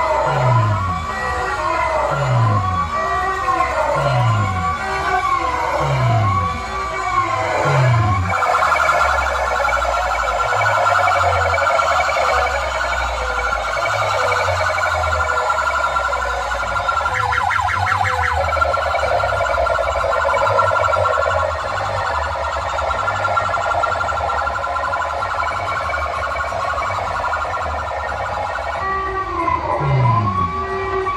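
Siren-style electronic effects played at high volume through horn-loudspeaker DJ rigs. For the first eight seconds a rising-and-falling wail repeats about once a second, each with a dropping bass note beneath. Then a steady, fast-warbling tone runs over bass, with a brief burst of rapid ticks in the middle, and the wail comes back near the end.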